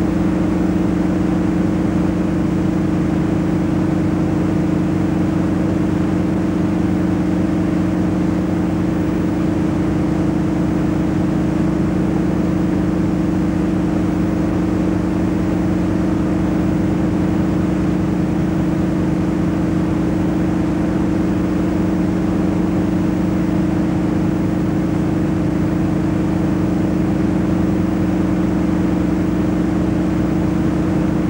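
A loud, steady low hum with two pitches, holding unchanged in level and pitch throughout.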